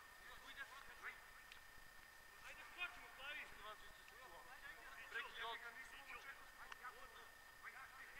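Faint, distant shouts and calls of footballers across the pitch, strongest about midway through, over a faint steady high tone.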